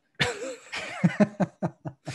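A man laughing after a joke: one breathy burst, then a string of short chuckles.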